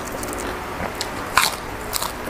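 Close-miked chewing and biting of crisp raw greens, with a few sharp crunches; the loudest comes about one and a half seconds in.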